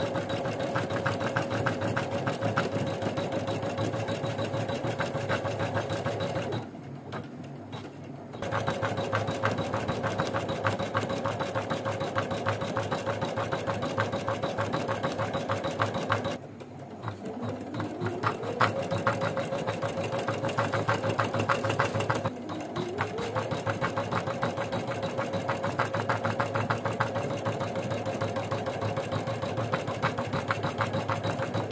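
Computerised embroidery machine stitching at speed: a rapid, even needle rattle over a steady motor hum. It drops quieter for a couple of seconds about a quarter of the way in. Twice later it slows and its pitch climbs back up as it regains speed.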